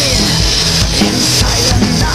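Symphonic metal song with a gliding melody line, played along on an acoustic drum kit: a steady wash of cymbals over repeated kick-drum beats.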